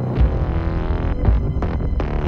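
Trailer sound design: deep bass booms about once a second over a low droning score, with a quick cluster of sharp hits in the middle.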